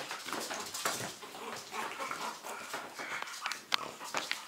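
Three-week-old French bulldog puppies vocalising as they scamper about, with quick, irregular clicks of their claws on a tile floor.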